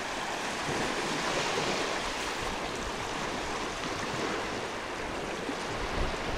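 Shallow freshwater stream running across a sand and gravel beach into the sea: a steady rush of water.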